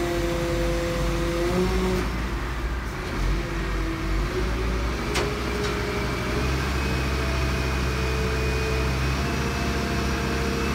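Front-loading refuse truck's diesel engine running with a steady whine over it. About six and a half seconds in, the engine note steps up and gets louder, and there is a single knock about five seconds in.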